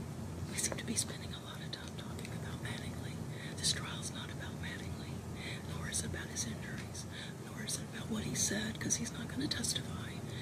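Low whispering and hushed voices, with scattered sharp hissing 's' sounds, over a steady low room hum.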